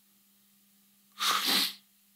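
A man's loud, sharp sniff through the nose while crying, one noisy burst about half a second long a little over a second in.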